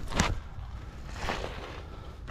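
Soft rustling and handling noise over a low rumble, with one sharp click just after the start.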